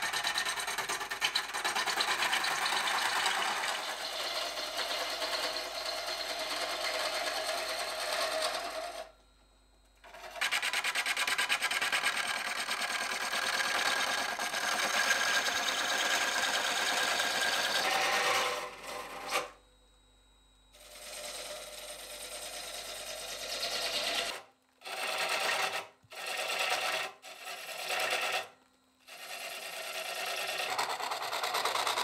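Wood lathe spinning a green-wood bowl while a hand tool works the surface: a steady rushing scrape of tool on wood. It drops out abruptly twice and is chopped into several short bursts near the end.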